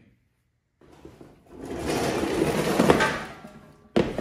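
A loud rush of noise, like a whoosh, that swells for about two seconds and fades away, with a sharp click at the very end.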